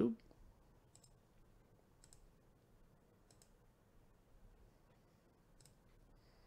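A few faint computer mouse clicks, about four, spaced a second or more apart, after a brief bit of voice at the very start.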